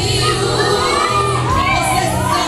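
A group of women singing a Portuguese gospel song, the lead voice amplified through a microphone, over a steady instrumental backing.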